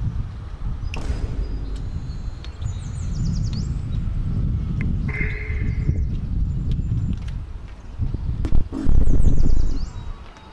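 Outdoor street ambience dominated by wind rumbling on the microphone, with a strong gust near the end. A few faint, high chirps can be heard over it.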